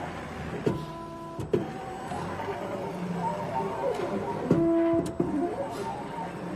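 CNC leather perforation machine running, its gantry and head motors whining in steady tones that change pitch as the head moves. The whine grows louder for about half a second two-thirds of the way through, and there are a few sharp clicks from the head.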